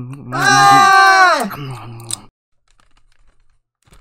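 A man's voice gives one long, drawn-out vocal sound, a held note lasting about two seconds that trails off, then almost nothing.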